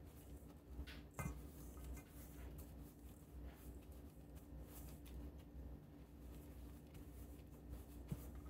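Faint rustling and squishing of softened butter being worked into rolled oats and brown sugar in a metal mixing bowl, over a low steady hum, with a small click about a second in.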